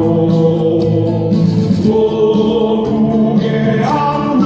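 A crowd singing a song together with amplified lead singers and backing music, the voices holding long notes over an even beat.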